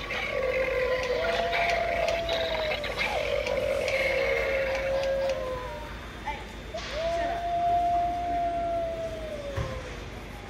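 Animatronic werewolf Halloween prop playing recorded wolf howls through its small speaker: long drawn-out calls one after another, each holding its pitch and then sliding down, with a short gap about six seconds in before one last long howl.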